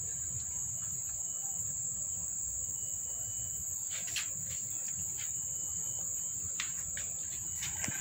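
Steady, high-pitched insect trill, like crickets, running unbroken, with a few brief soft clicks.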